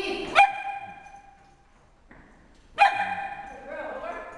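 Dog barking: a loud, sharp bark about half a second in and another near three seconds, each trailing off briefly, with a shorter rising call just before the end.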